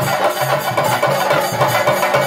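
Chenda drums beaten with sticks in a dense, fast continuous roll, Kerala Theyyam ritual drumming, with a wind instrument holding low notes underneath.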